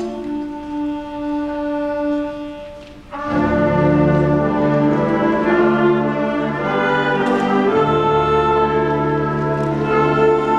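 School concert band playing: a soft passage of a few held notes thins out, then about three seconds in the full band comes in louder, with low brass and a bass line underneath.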